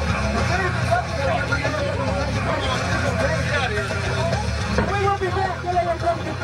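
Several people's voices talking over one another, over a steady low rumble.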